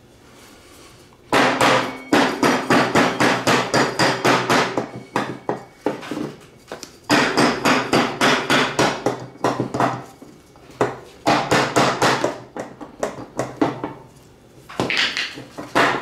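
Mallet blows hammering on a John Deere Z335e mower-deck spindle pulley that is stuck fast on its shaft, knocked loose without a puller. Rapid strikes, about four or five a second, in three runs with short pauses between them, each blow ringing slightly.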